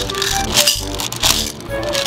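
Background music playing, with candies rattling out of a turn-knob candy dispenser into a small plastic cup as the knob is turned, a rattle that comes about every two-thirds of a second.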